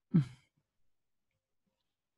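A person's short sigh, a breathy voiced exhale that falls in pitch.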